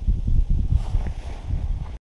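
Uneven low rumble of wind and handling noise on a body-worn camera's microphone, with some light rustling, cutting out suddenly at the end.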